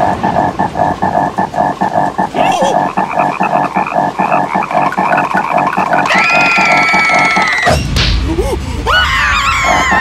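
Cartoon frog croaking in a fast, steady pulse of about four to five croaks a second. About six seconds in, the two larvae scream over it in one long, high cry. Near the end a low thud is followed by rising and falling squeals.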